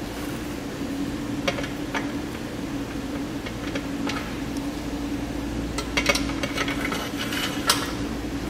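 Scattered light metal clicks and scrapes as a square nut on a bolted corner brace is slid along the track of an aluminum crossbar, with a quick run of clicks about six seconds in. A steady low hum runs underneath.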